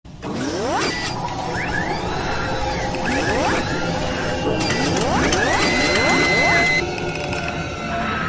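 Sound effects for an animated intro logo: mechanical whirring and ratcheting with clicks, and several rising pitch sweeps, the last ending in a held high tone that cuts off about seven seconds in.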